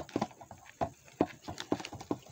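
Trading cards handled one at a time off a stack, making several light taps and snaps at uneven spacing, the sharpest right at the start.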